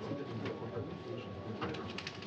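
Low, indistinct murmur of voices in the room, with a thin, steady high-pitched electronic tone throughout.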